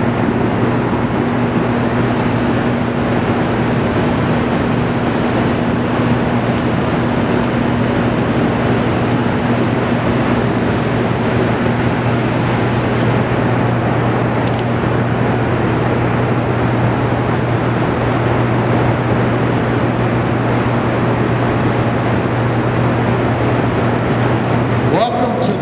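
Steady machinery hum of the Hoover Dam powerhouse's hydroelectric generators: a low, even tone under a constant rushing noise, with a fainter higher tone that fades about halfway through.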